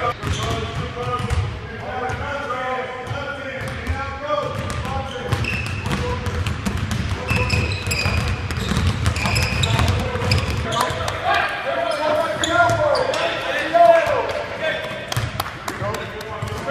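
Basketball practice in a gym: basketballs bouncing on the hardwood court, with short high squeaks of sneakers on the floor and players and coaches calling out indistinctly.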